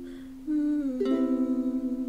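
Acoustic ukulele with a woman humming a short falling phrase; about a second in she strums a final chord that rings out and slowly fades, closing the song.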